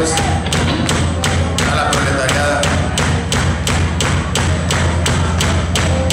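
Live band's rhythm section playing: drums hitting a steady beat about twice a second over a held low bass line, with a few sustained notes above.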